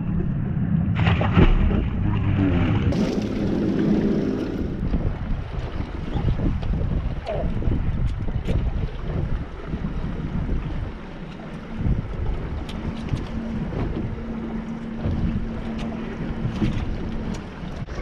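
Wind buffeting the microphone on open water aboard a small fishing boat, a dense low rumble. A low steady hum runs under it during the first few seconds and again faintly in the second half.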